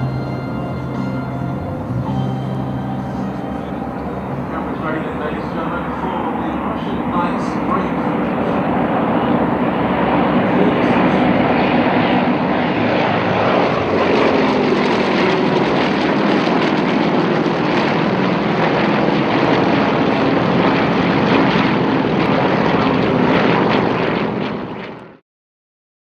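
Several Yak-52 aircraft's nine-cylinder radial engines running together, a drone that swells louder, with pitches sliding as the aircraft pass and break apart. Music fades out in the first couple of seconds, and the sound cuts off abruptly just before the end.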